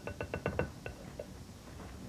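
A utensil clicking against a glass mixing bowl while strawberry sauce is stirred: a quick run of about eight light taps in the first second, then only faint sound.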